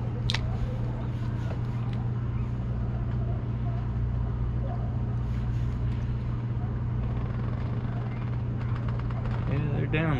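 Steady low machine hum at a constant pitch, with a single short click just after the start.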